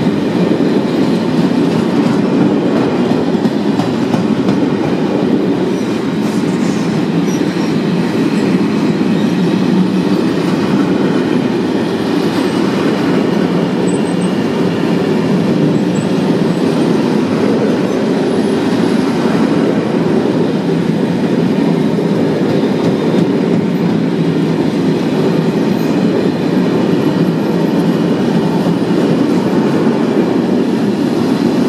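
A long freight train of covered sliding-wall boxcars rolling past close by: a steady, loud rumble of steel wheels on the rails that holds even throughout.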